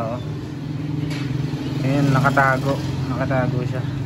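People talking, the clearest voice about two seconds in, over a steady low mechanical hum.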